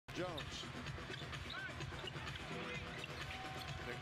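Live basketball game sound: a ball dribbling on a hardwood court and sneakers squeaking, over steady arena crowd noise. A sharp squeak comes just after the start and a fainter one about a second and a half in.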